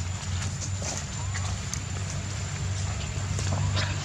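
Monkeys moving over dry ground, making scattered clicks and rustles, with a couple of short squeaks about a second in and near the end, over a steady low hum.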